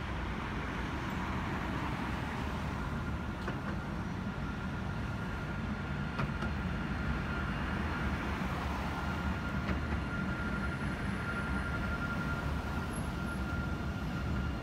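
A Dubai Tram light-rail train passing close by: a steady low rumble with a thin steady whine that sets in a few seconds in and grows stronger in the second half.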